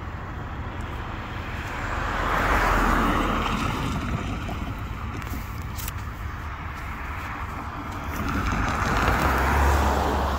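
Road traffic passing a railroad crossing: two vehicles go by, their tyre noise swelling and fading, the first about three seconds in and the second near the end, over a steady rumble.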